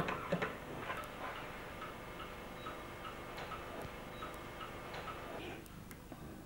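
Buttons pressed on a push-button desk telephone, a few sharp clicks at the start, followed by a light, even ticking about twice a second that stops shortly before the end.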